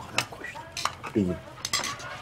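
Spoons clinking against plates and bowls during a meal: a few sharp, scattered clinks, with a short voice fragment a little past a second in.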